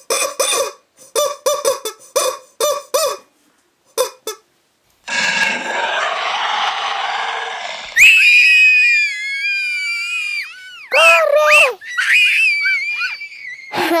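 A high-pitched squawking squeal from a squeezed rubber chicken toy. It starts about eight seconds in and wavers and dips in pitch for about three seconds, followed by more short squeaks. Before it come short chopped high-voiced sounds and a burst of noise lasting about three seconds.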